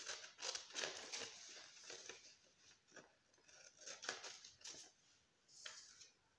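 Scissors snipping through lined notebook paper, with the sheet rustling as it is held and turned. The faint snips come close together for about two seconds, then more sparsely, with a last few near the end.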